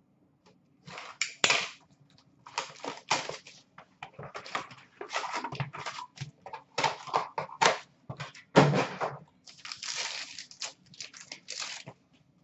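A trading-card pack being torn open by hand, its wrapper crinkling and rustling, with the cards slid out and handled. The sound is a run of irregular crackles and rustles that starts about a second in and goes on with short gaps.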